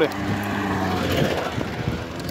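Small motorcycle engine running at a steady pitch as the bike passes close by, fading toward the end.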